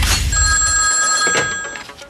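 A telephone ringing: one steady ring lasting about a second and a half, fading toward its end. It comes over the tail of a sharp hit whose low rumble dies away about a second in.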